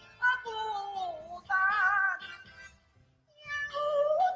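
High, gliding Cantonese opera-style singing over backing music, in drawn-out phrases that slide down in pitch, with a brief pause about three seconds in.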